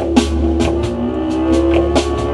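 Live instrumental band of lap steel guitar, bowed cello, harp, bass guitar and drum kit playing: held notes with a slide rising in pitch over steady drum and cymbal hits.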